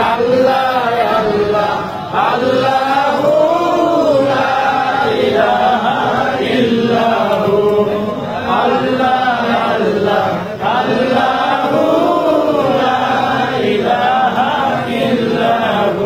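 A group of men singing an Islamic devotional chant together, a melody that rises and falls, with short breaks between phrases about two seconds in and again near the middle.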